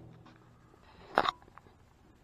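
A single short knock about a second in, over quiet room tone, followed by a few faint ticks.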